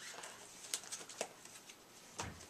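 Comic books being handled and shuffled on a stack: faint paper rustling with two light ticks, one under a second in and one a little later.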